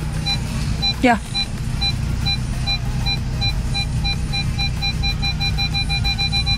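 A Volkswagen's parking sensor warning beeping from inside the cabin, short even beeps about two to three a second: an obstacle is close while the car is manoeuvred. Under it the engine idles as a steady low hum.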